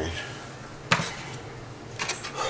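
A single sharp knock about a second in, from hands-on work on a cabinet's door hinges, over quiet room tone.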